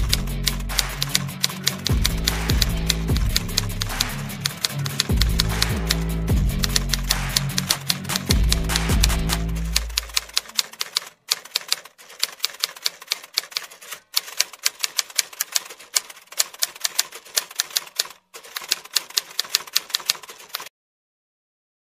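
Typewriter keystroke sound effect: a rapid, uneven run of clicks. Background music with a deep bass runs under it and stops about halfway, leaving the clicks alone.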